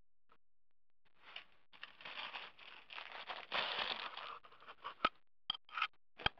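Plastic bags of butchered venison rustling and crinkling as they are handled in a plastic bin, starting about a second in. Near the end come a few sharp clicks and knocks.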